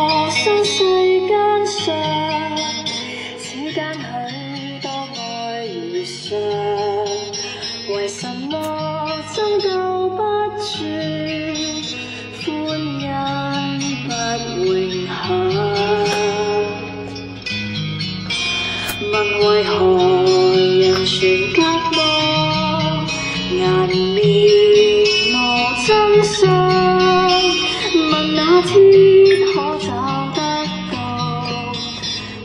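A Chinese song, a singer's melody over guitar accompaniment, playing from a cassette boombox. It starts right at the beginning as the boombox is switched on.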